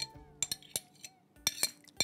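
Metal spoon clinking against a clear plastic tub as curd cheese is scooped out into a blender jar: about five short, sharp taps, spread across two seconds.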